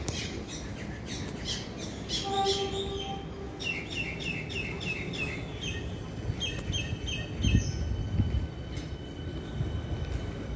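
Birds chirping: a quick run of short falling chirps a few seconds in, then more repeated high notes, with a brief steady pitched tone just before them. Under it is a low background rumble that swells briefly near the end.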